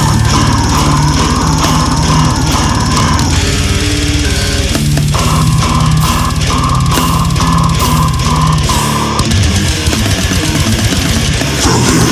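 Brutal death metal track: distorted electric guitar riffing over very fast drumming. The drum pattern changes about nine seconds in.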